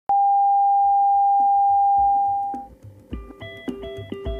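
A steady, loud test-card reference tone, one unchanging beep-like pitch, sounds with the colour bars and fades out a little over halfway through. Upbeat music with a low beat runs faintly under it and becomes clear as the tone fades, with short repeated plucked, bell-like notes.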